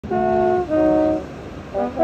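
Trombone and saxophone playing jazz together: two long held chords, then a brief lull and short notes near the end.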